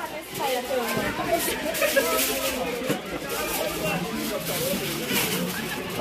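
Background chatter of several people talking at once, with no single voice standing out.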